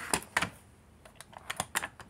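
Sharp clicks and light knocks of small metal parts as an old four-barrel carburetor is handled on a workbench: two near the start, then a quick run of shorter clicks in the second half.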